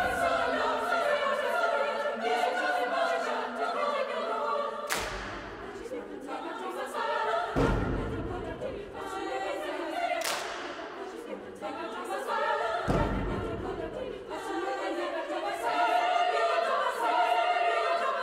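Girls' choir singing a lively Hungarian folk dance song in several parts. A few loud thumps cut through the singing every few seconds.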